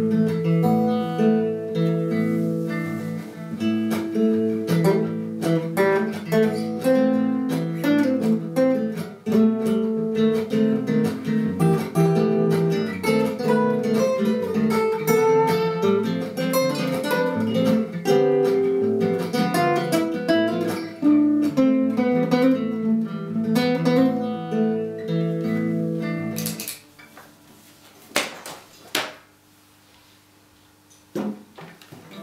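Acoustic guitar playing a melody over a looped guitar part replayed by a looper pedal, several lines of plucked notes at once. The music cuts off suddenly near the end, followed by a few faint knocks.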